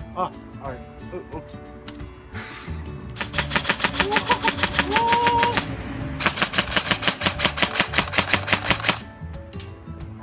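Electric next-generation airsoft M4, built with a Big-out DTM electronic trigger and a samarium-cobalt motor, firing two long bursts of rapid automatic fire. Each burst lasts about three seconds, with a short break between them, and the shots come in a fast, even rhythm.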